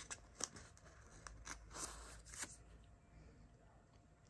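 Faint crinkling and light clicks of a plastic binder page sleeve as a baseball card is slid out of its pocket, mostly in the first two and a half seconds.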